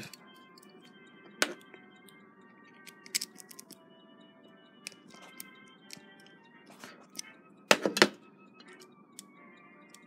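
Scattered clicks and light metal knocks from a Westclox Big Ben chime alarm clock movement being turned over and handled while it is checked for a let-down mainspring. The loudest click comes about a second and a half in, and a quick cluster of knocks follows near the end. Faint steady tones lie underneath.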